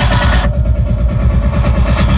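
Live band music led by an electronic arranger keyboard, with a dense, fast-pulsing bass beat. About half a second in, the high end drops away abruptly.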